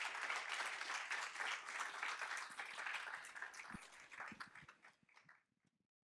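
Audience applauding, thinning out to a few last scattered claps and stopping about five seconds in.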